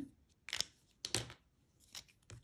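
Handling sounds of stamping supplies on a craft table: two brief scratchy rustles, then a short click near the end.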